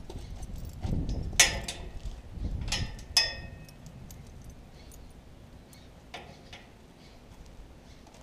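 Bridle hardware, the metal bit and curb chain, clinking and jingling a few times while being handled. One clink about three seconds in rings briefly. Soft scuffing goes with it at first, and it goes quiet after about four seconds.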